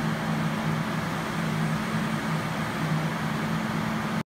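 A steady low mechanical hum with an even hiss underneath.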